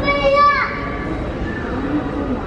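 A child's high voice calls out briefly near the start, over the general murmur of voices in an airport terminal.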